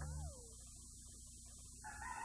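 Steady low hum and a constant high-pitched squeal from a VHS tape's audio track, heard in a quiet gap in the programme sound. A falling tone fades out in the first half second.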